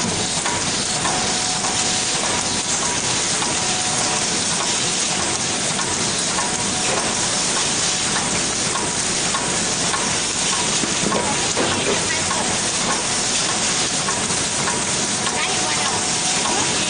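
Automatic cartoning machine for ice-cream sticks running continuously: a steady, dense mechanical clatter and hiss with a faint steady hum of tones underneath.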